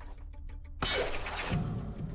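A large pane of glass shattering about a second in, the crash of breaking glass dying away over half a second and followed by a low heavy rumble, over orchestral film score.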